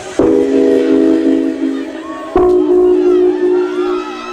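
A train-horn-style chord played over a stage sound system, sounding twice as long held blasts of about two seconds each, each starting suddenly.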